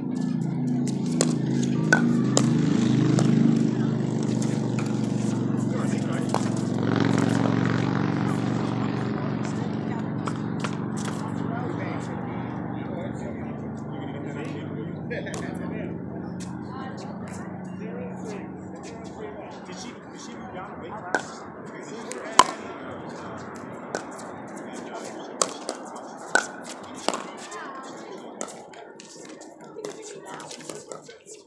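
Pickleball paddles striking the ball in a rally: sharp, hollow pops, several in quick succession in the second half. Under them a low, pitched drone fades out over the first twenty seconds, and voices murmur in the background.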